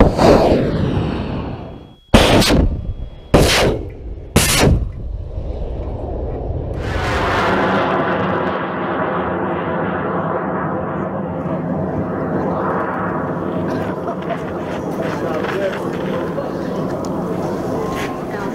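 A large O4500 high-power solid rocket motor ignites and the rocket lifts off. A loud sudden blast fades over about two seconds, then come three loud cracks about a second apart, then a long steady rough rumble as the motor burns during the climb.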